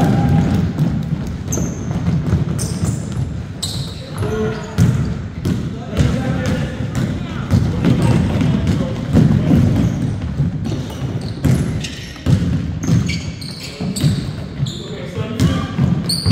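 Basketball being dribbled on a hardwood gym floor, bounces coming irregularly through the play, with short high squeaks of sneakers and the chatter of players and spectators echoing around the gym.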